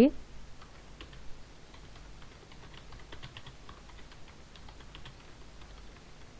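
Typing on a computer keyboard: a run of quiet key clicks at an irregular pace.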